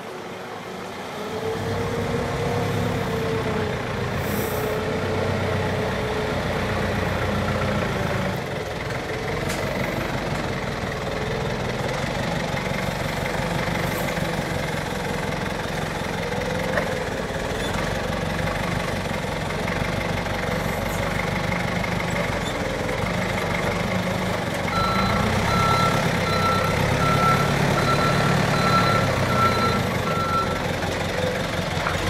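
Yale forklift engine running and revving up and down as it works at the lorry's trailer. Near the end its reversing alarm beeps steadily, about two beeps a second, as it backs away.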